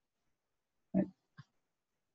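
Silence, broken about a second in by two brief vocal noises from the narrator, short pitched mouth or throat sounds with no words.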